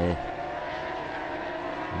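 Superbike race motorcycles running at high revs, a steady high-pitched engine whine.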